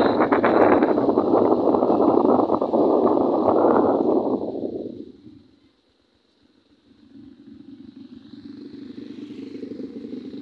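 Motorbike riding noise, engine and wind rushing over the microphone, loud and steady, then fading away about four to five seconds in as the bike slows. After a moment of near silence, a softer engine sound builds toward the end.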